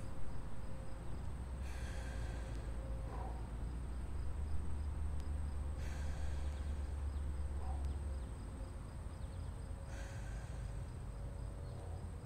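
A man taking three slow, deep breaths through the mouth, about four seconds apart, each a short rush of breath, over a low steady rumble.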